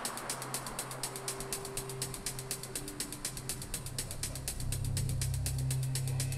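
Background music bed of rapid, evenly spaced ticking clicks like a clock or ratchet, over sustained low synth notes that swell louder near the end.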